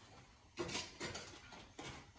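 Metal tongs knocking and scraping against a wire oven rack as they tug at a pizza stuck to it: a few faint clicks and scrapes about half a second in, at one second, and near the end.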